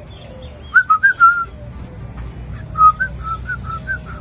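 A bird calling in short, clear whistled notes: a quick cluster of three or four about a second in, then a run of evenly repeated notes, about four a second, from about three seconds on.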